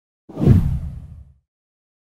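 A single whoosh transition sound effect: a deep swoosh that swells in quickly, peaks about half a second in and dies away within a second.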